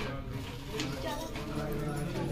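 People talking in the background, not close to the microphone, with a few light clicks and knocks from kitchen work.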